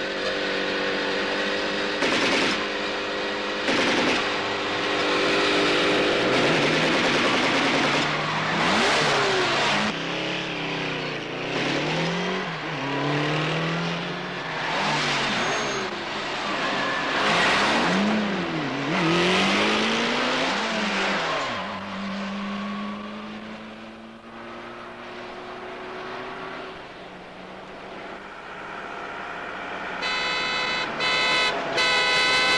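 Large motorcycle engines revving hard, their pitch sweeping up and down again and again as they speed past, mixed with car engines. Two short sharp bangs come in the first few seconds.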